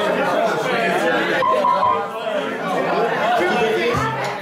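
Bar crowd chatter: many people talking at once, with no music playing.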